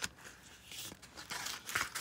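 Soft rustling and scraping of paper as a card is slid out of a pocket in a handmade paper journal, with most of the scratchy sound in the second half.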